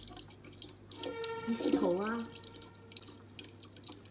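A thin stream of tap water trickling and dripping into a plastic bottle, faint and steady. About a second in, a short voice with a wavering pitch is heard over it for about a second.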